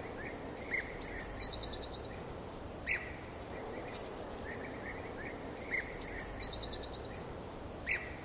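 Birds chirping over a steady outdoor background hiss: a few chirps, then a quick run of high notes stepping down in pitch, then one sharp chirp. The same set of calls comes round again about five seconds later.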